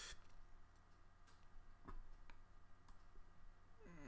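Near silence with a few faint, scattered clicks of a computer mouse, about five over the few seconds, over a low steady hum.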